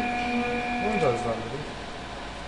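Wood CNC router's axis motors humming with a steady whine of several pitches while jogging at very low speed, stopping about a second in.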